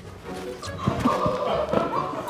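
Two people falling onto a hard studio floor mid-kiss: knocks and shoe scuffs about a second in, with onlookers' shouts and gasps over background music.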